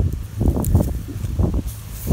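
Irregular rustling and scuffing from movement over leaf litter and grass, several times, over a low steady rumble.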